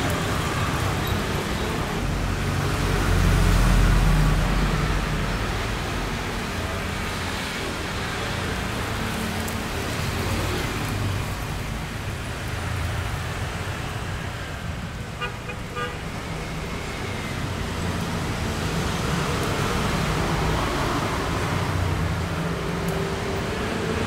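Road traffic: cars passing with a steady low rumble over a constant hiss, loudest as a vehicle goes by about four seconds in. A brief tone sounds about fifteen seconds in.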